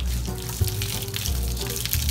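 Background music with a steady bass line and held notes, over a steady crackling hiss.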